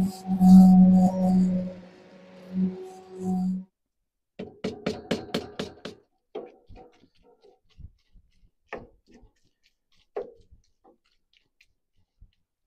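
Handheld immersion blender motor running with a steady hum, switched off and on a few times while puréeing vegetables and cooking liquid in a cast-iron Dutch oven, then stopping. After a short pause comes a quick run of about five knocks and then scattered taps: a wooden spatula working beef in a cast-iron pan.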